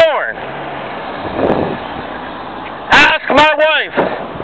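A vehicle passing: a steady noise that swells and fades in the pause between loud, high-pitched shouted speech, which stops just after the start and comes back about three seconds in.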